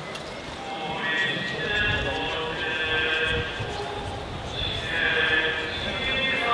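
Voices singing a slow hymn outdoors, holding long notes, over a murmur of crowd noise.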